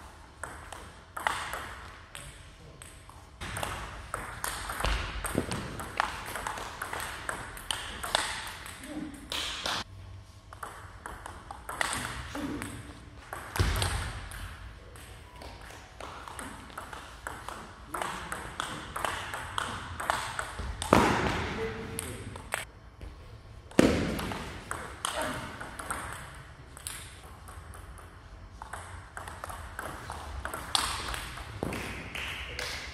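Table tennis rallies: the ball clicking sharply off the paddles and the table in quick runs, with short pauses between points.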